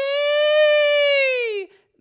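A woman's voice holding one high, wordless note in a crying quality, its pitch lifting a little and then sagging away before it stops near the end. It demonstrates the 'cry' quality used to carry the voice up to high notes without belting.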